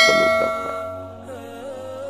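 A bright bell-like ding, the subscribe-button bell sound effect, rings out at the start and fades over about a second. Soft background music with sustained, gently bending tones follows.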